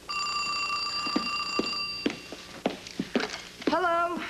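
Telephone ringing once for about two seconds, then stopping. A few light knocks and clicks follow as the handset is handled.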